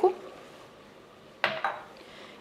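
A single short clink of kitchenware about a second and a half in, over a faint steady hiss.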